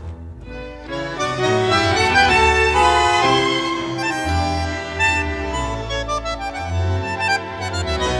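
Instrumental tango played by a tango orchestra: bandoneons and violins over a bass line. The music drops back briefly at the start and swells again about a second in.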